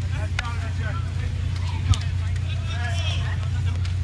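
Steady low hum of stadium ambience, with faint, distant voices of players calling out and a single short click about halfway through.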